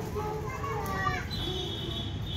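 Children's voices, calling and chattering in short rising and falling sounds, over a low steady rumble. A thin, high, steady tone comes in about two-thirds of the way through.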